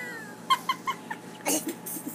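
High-pitched giggling: four quick 'ha' pulses in a row, then a breathy burst of laughter about one and a half seconds in.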